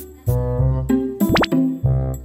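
Bouncy background music with a keyboard melody and bass in a regular beat; about a second and a half in, a quick rising whistle-like glide cuts through it.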